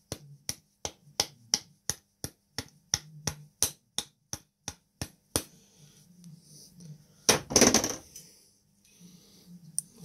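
Sharp hard-plastic taps, about four a second for five seconds: a screwdriver's insulated handle knocking tight 18650 cells out of a Milwaukee M18 battery pack's plastic cell holder. A louder, longer clatter follows about two seconds later.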